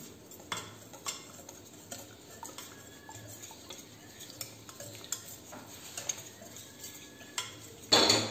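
Wire whisk stirring thin gram-flour and curd batter in a stainless steel bowl: soft swishing with scattered light ticks of the wires against the bowl. A single sharp knock near the end.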